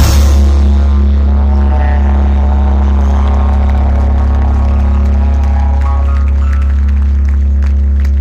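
Live rock band ending a song: a final hit right at the start, then a loud, steady low bass drone held throughout, with higher chord notes fading slowly above it.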